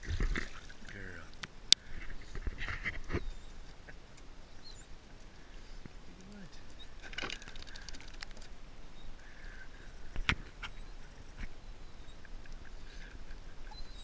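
Water streaming and splashing off a dachshund as it climbs out of a pool, loudest in the first half second. A single sharp click follows at about two seconds, the loudest sound of all, then scattered light knocks and a short rushing noise about seven seconds in.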